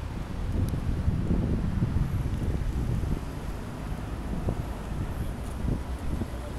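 Wind buffeting the microphone over the rumble of city street traffic, louder for a couple of seconds about a second in.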